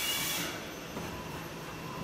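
A running CNC vertical machining center: a brief hiss in the first half second, then a steady mechanical hum.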